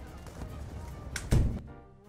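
Action video-game sound effects on a cartoon soundtrack: a low rumble, then a heavy thud about 1.3 seconds in, after which it dies down to a faint held tone.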